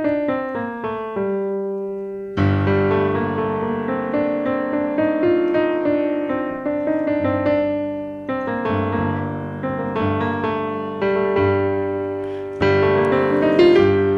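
Digital piano in a piano voice playing a descending G minor scale that comes to rest on a held low G. From about two and a half seconds in, both hands play: bass chords under a right-hand melody, with fresh chords struck every few seconds.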